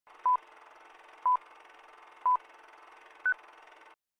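Film-leader countdown sound effect: three short beeps one second apart, then a fourth, higher beep a second later, over a steady hiss.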